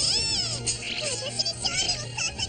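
A high-pitched, cat-like female anime voice cheering, with background music underneath.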